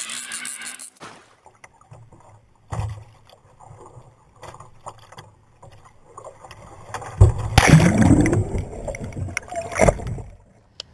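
A sea kayak capsizing: a sudden loud rush of water crashing over the boat about seven seconds in, lasting nearly three seconds.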